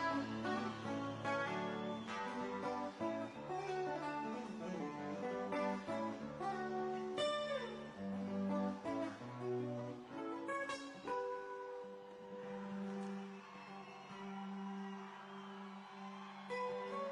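Solo nylon-string classical guitar, fingerpicked: quick runs of plucked notes that ease into slower, longer held notes in the last few seconds.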